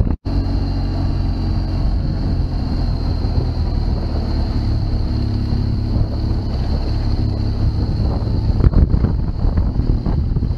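2004 BMW R1200GS's boxer-twin engine running steadily under way, heavy wind noise on the microphone over it. The sound drops out for a moment just after the start.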